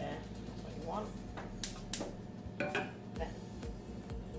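A metal saucepan set back down on a gas hob's cast-iron pan support: two sharp clanks just before two seconds in, followed by a few lighter knocks.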